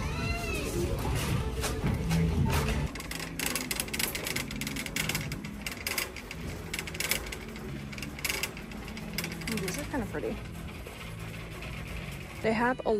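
Retail store ambience: background music and faint distant voices, with a run of crackling clicks through the middle.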